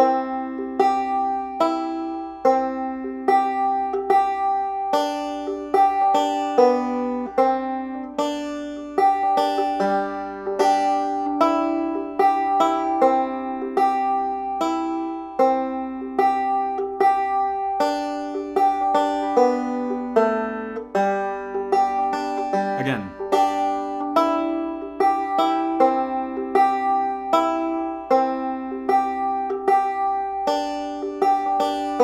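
Five-string banjo in open G tuning, picked two-finger thumb-lead style: a steady run of single plucked notes and pinches in an even rhythm, playing an old-time melody.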